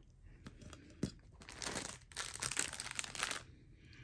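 Clear plastic bag of diamond-painting drills crinkling as it is picked up and handled, preceded by a couple of light clicks. The crinkling starts about a second and a half in and stops just before the end.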